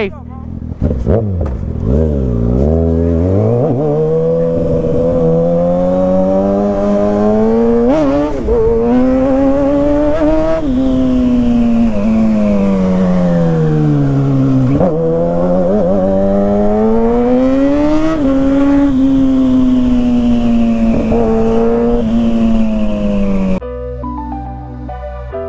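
Kawasaki ZX6R's inline-four engine pulling away and accelerating hard. Its note climbs steadily and drops at a shift or roll-off about ten seconds in, falls as the bike slows, then climbs again before easing off near the end.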